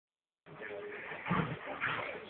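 Dogs growling in play as they wrestle, with a louder growl just past a second in.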